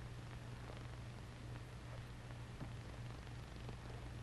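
Low steady hum with a faint hiss: the background noise of an old television soundtrack during a pause, with a few faint ticks.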